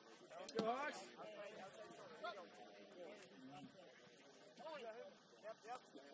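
Voices shouting and calling out on a rugby field during a scrum, mostly faint, with one louder "hey" about half a second in.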